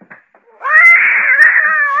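A domestic cat's loud, long yowl, starting about half a second in, holding its pitch and then sliding down as it fades.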